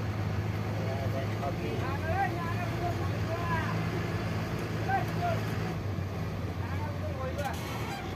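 Bus engine running with a steady low drone, heard from inside the cabin while driving slowly. Voices can be heard over it from about two seconds in.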